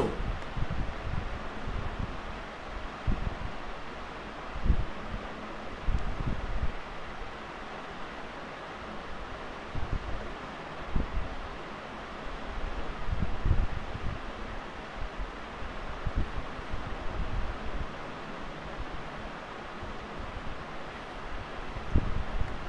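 Open-microphone background noise: a steady hiss with irregular low rumbles and soft thumps, like breath or handling on the microphone.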